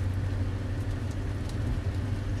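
Steady low rumble of engine and road noise heard inside the cabin of a moving car.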